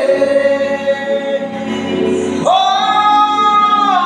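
A man singing karaoke into a handheld karaoke microphone with music behind him, holding a long note that ends about half a second in and another long note from about two and a half seconds in.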